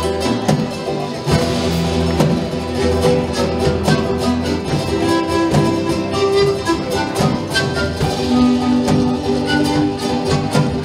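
Live Andean folk music: a strummed charango and a steel-free acoustic guitar over a drum kit, with a held melody line and a steady rhythm.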